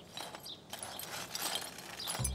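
Hand brush sweeping spilled soil and broken flower pot shards into a dustpan: faint, uneven scraping with scattered small clicks.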